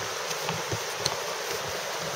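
Footsteps on a wooden boardwalk, a few soft low thuds, over a steady background hiss.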